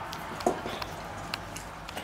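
Dog eating from its food bowl: a few small clicks and knocks of chewing and of the bowl, the sharpest about half a second in.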